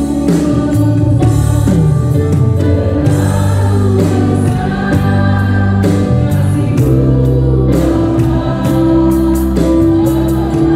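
Live gospel worship band playing, with an electronic drum kit struck with sticks over two keyboards and a bass guitar, and voices singing along.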